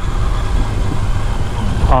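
Yamaha FJ-09's 847 cc three-cylinder engine running as the bike rolls along at low speed: a low, steady rumble.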